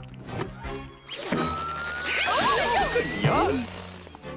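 Cartoon sound effect of an inflatable balloon canoe blowing up. About a second in, a rush of air starts with a thin whistle that rises slowly for about two seconds, mixed with squeaky, rubbery sounds, over background music.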